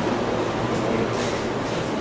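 Steady background hiss and hum, with a few faint tones and brief high-pitched ticks, and no speech.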